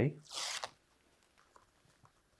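Release-paper backing being peeled off double-sided foam tape: one short rasping peel of about half a second near the start.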